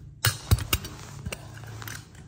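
A few sharp clicks and knocks of small metal die-cast toy cars being handled and knocking together, the loudest about half a second in.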